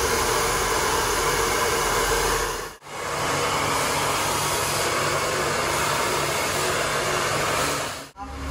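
Handheld hair dryer blowing steadily as hair is blow-dried with a round brush, a loud even rush of air over the motor's hum. It cuts out for an instant about three seconds in, then carries on.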